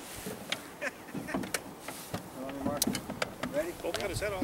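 Quiet voices talking, clearest in the second half, over scattered light clicks and knocks from handling in a small aluminum fishing boat.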